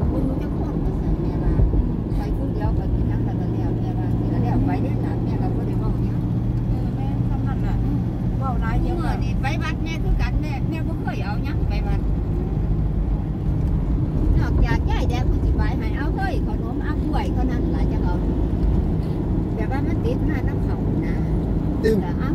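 Steady low road and engine noise inside a moving car's cabin, with people talking over it at times.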